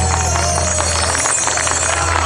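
A live band of acoustic guitars, bass and cajón holding a final chord, its low bass note cutting off a little past the middle, with crowd voices and scattered claps rising as the song ends.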